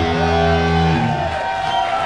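Live pop-punk band's electric guitars and bass striking a chord that rings for about a second and then breaks off, leaving a single high guitar tone sustaining.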